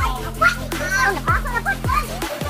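Electronic dance music with held deep bass notes and sliding bass drops, three in the span, under a high-pitched voice.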